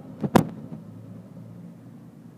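Low, steady rolling rumble of a ride in a pedal bicycle taxi, with two sharp knocks close together about a third of a second in.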